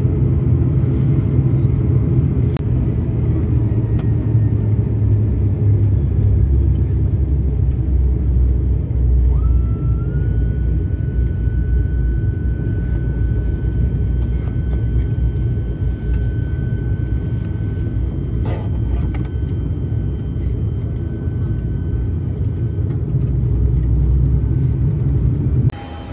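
Cabin noise of an ATR 72-600 taxiing, its Pratt & Whitney PW127 turboprops running: a steady low rumble. About ten seconds in, a thin high whine starts with a short rise and holds, fading a few seconds before the end. The rumble drops off abruptly near the end.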